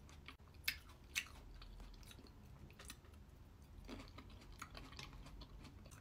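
Faint close-up chewing of a mouthful of crisp red grapes with a creamy topping: soft wet chewing with a few short, sharp crunches about a second in and again around three and four seconds.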